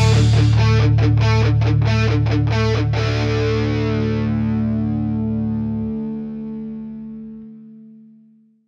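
A rock band's closing chord: distorted electric guitars and bass held and ringing, pulsing rapidly for the first three seconds, then left to die away and fade out.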